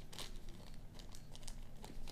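Small clear plastic bag of spare earbud tips crinkling as it is handled, a string of light, irregular crackles.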